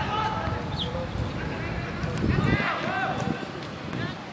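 Footballers shouting short calls to one another across the pitch during play, the loudest calls coming a little past halfway, over a constant low outdoor rumble.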